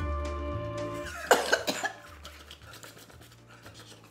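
Background music, then a couple of harsh coughs about a second in, loud against the music. They are the throat's reaction to a shot of cinnamon whisky spiked with Tabasco.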